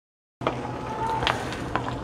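Silence for the first half-second, then a steady low hum with a couple of light knocks as a spatula stirs noodles in a steel pan.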